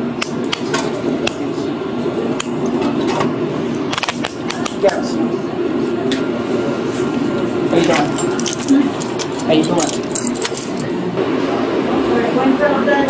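Steel handcuffs clinking and clicking as they are handled: a string of sharp metallic clicks over a steady background murmur.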